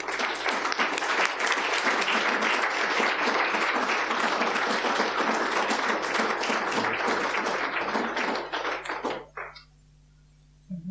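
Audience applauding, beginning at once and holding steady for about eight seconds, then thinning to a few last claps and stopping about nine seconds in.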